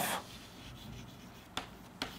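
Chalk scratching faintly on a chalkboard as a word is handwritten, with a sharper tap of the chalk about one and a half seconds in.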